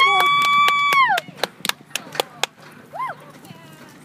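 A spectator cheering on a barrel-racing rider: a long, high held shout of "go", then several sharp clicks and a short second "go".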